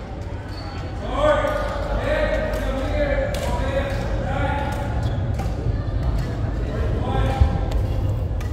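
Voices talking and calling in a large sports hall, with sharp clicks of badminton rackets hitting shuttlecocks and shoes knocking on the court throughout.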